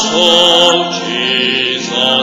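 Church music: a voice singing long held notes with a wide vibrato, over a steady sustained accompaniment.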